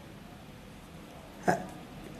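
A man's brief hesitation sound, "uh", about one and a half seconds in, over quiet room tone.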